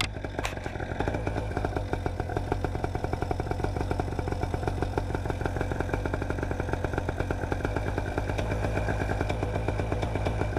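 Paramotor engine and propeller running steadily, a fast even pulsing drone, just after starting.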